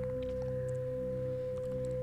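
Steady background drone of a meditation soundtrack: one pure, held mid-pitched tone with a faint low hum beneath it.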